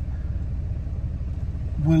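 Steady low rumble of a camper van's engine and road noise heard from inside the cabin while driving.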